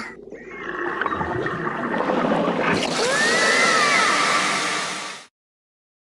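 A rushing noise that builds over the first couple of seconds and swells, with a few gliding squeal-like tones rising and falling through the middle, then cuts off abruptly near the end.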